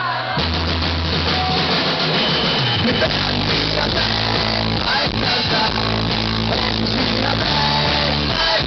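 Live rock band playing: electric guitar, bass and drum kit. Low bass notes come in just after the start, and the band grows fuller about three seconds in.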